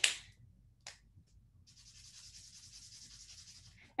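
Chisel-tip highlighter (Zebra Mildliner) rubbing across paper in quick colouring strokes, a faint steady scratchy hiss starting a little under two seconds in. Before it there is a short sharp sound right at the start and a click about a second in.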